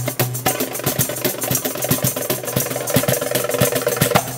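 A wooden cajón and a darbuka played by hand together. About half a second in, the separate strokes give way to a fast, continuous drum roll that stops right at the end.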